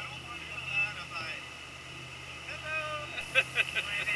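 Dive boat's engine running under way with a steady low hum, people's voices heard over it on deck, and a quick run of short sharp sounds near the end.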